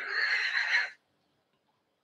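A man's high, breathy squeal of laughter, about a second long, then it stops.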